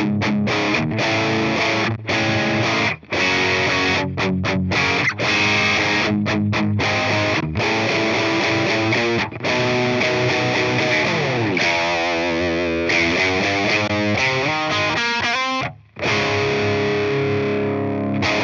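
Distorted electric guitar riff from a Synergy Syn 30 preamp driving a Friedman BE100's power amp. The playing stops short several times in the first half, moves to wavering held notes in the middle, and ends on a held chord after a brief break.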